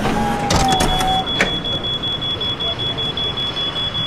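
Walk-through security metal detector alarm: a high, rapidly pulsing beep that starts about a second in and holds steady, signalling that it has detected something on the man passing through. Before it there are a short lower tone and a few sharp clicks.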